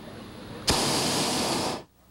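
A hot air balloon's propane burner firing in one short, loud blast of about a second. It starts abruptly and cuts off.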